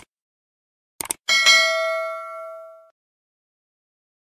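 Subscribe-button animation sound effect: a mouse click right at the start and a quick double click about a second in, then a bright notification-bell ding that rings out and fades over about a second and a half.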